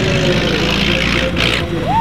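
The 1925 Hispano-Suiza H6C's straight-six engine running steadily as the car drives past, a low, even rumble under a commentator's voice. A short hiss comes about a second and a half in.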